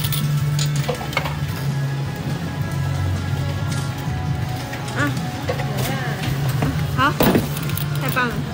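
Claw-machine arcade background: music over a steady low hum, with a few brief voice sounds about five and seven seconds in.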